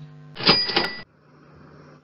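A short added sound effect, a burst of noise with a high ringing tone, lasting under a second and ending in a sharp click, marking an answer line appearing on the worksheet. A faint steady hum lies under it.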